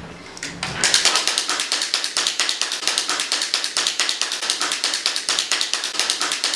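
Several small wind-up toys and other clicking novelty toys running at once on a table: rapid, steady clicking, about eight clicks a second, that starts about a second in.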